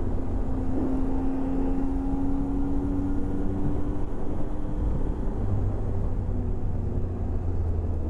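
Triumph Tiger motorcycle running steadily along the road, heard from a helmet-mounted camera: a low engine hum under wind and road noise, with one steady tone held for the first few seconds.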